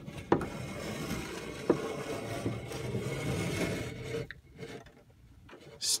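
Plastic cup scraping and rubbing against the wooden sides of a narrow wall cavity as it is hauled up on a string, with a couple of sharp knocks along the way. The scraping dies down about four seconds in.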